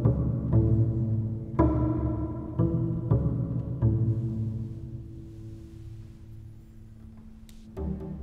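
Solo double bass played with the bow: a run of low notes with sharp attacks, then one long held note that fades over about three seconds. Just before the end a louder, quickly repeated figure begins.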